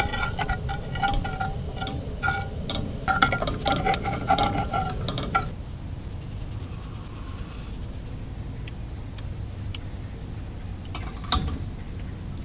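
Metal spoon stirring a pot of berry jam, clinking against the side of the metal pot with short ringing taps for the first five seconds or so. After that the clinking stops, leaving a steady low rumble, with one more tap near the end.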